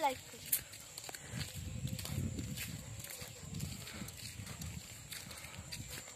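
Footsteps walking on a loose gravel road, a steady series of light crunching steps over a low rumble.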